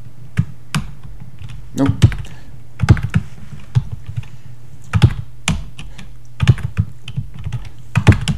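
Computer keyboard keys clicking in short, irregular bursts of typing, over a steady low hum.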